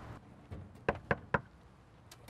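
Knuckles knocking three times in quick succession on a panelled wooden front door, about a second in.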